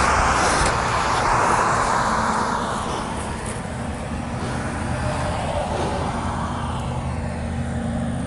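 Road traffic going by: a passing vehicle's rush is loudest at the start and fades over the first few seconds, over a steady low drone.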